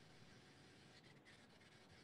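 Near silence: faint room tone on a video-call line.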